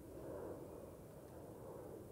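Faint, steady background noise with no distinct sound event.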